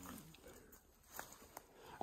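Near silence: quiet outdoor ambience, with a faint low murmur dying away at the very start and a couple of faint ticks later on.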